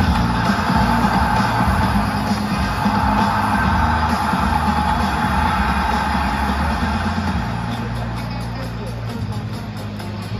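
Music of a stadium's game-start video played loud over the PA system and echoing in a domed ballpark, with crowd noise beneath. It gradually gets quieter over the second half.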